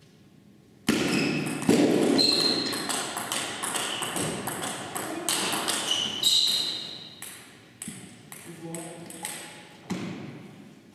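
Table tennis rally: the plastic ball clicking off the players' bats and bouncing on the table in quick succession, with short ringing pings, echoing in a large hall. It starts sharply with the serve about a second in and dies away around eight seconds in when the point ends.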